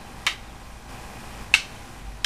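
Eskrima sticks clacking together in a tres-tres stick drill: two sharp strikes, about a second and a quarter apart.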